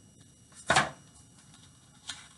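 A hardcover picture book's page being turned: one short paper rustle just under a second in.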